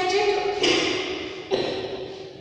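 A woman speaking in a lecturing voice, trailing off near the end.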